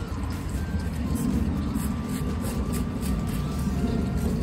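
Gloved hand scraping and pressing loose garden soil into a basin around a plant: soft scrapes over a steady low rumble, with faint held musical tones.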